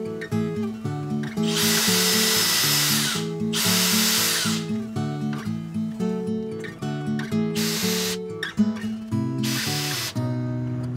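Cordless drill boring pilot holes into a laminate shelf, in four bursts: a long one starting about one and a half seconds in, a shorter one right after it, and two brief ones near the end. Acoustic guitar music plays underneath.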